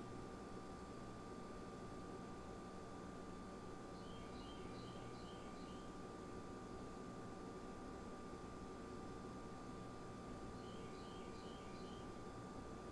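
Quiet room tone with a faint steady hum. Two short runs of faint high chirps, a few quick notes each, about four seconds in and again near the end.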